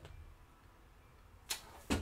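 Quiet room tone with one brief swish about one and a half seconds in, and a fainter one just after.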